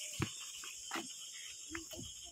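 A steady chorus of night insects keeps up a high-pitched hum, with a few faint clicks and knocks.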